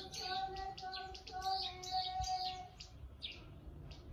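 Birds chirping repeatedly, with a voice holding a few long, level notes through the first three seconds or so.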